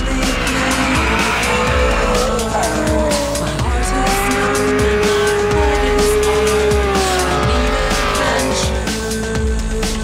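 Drift car sliding sideways with its engine held at high revs and its tyres squealing; the engine pitch sweeps up and down, holding steady for a few seconds in the middle. Electronic music with a steady beat plays underneath.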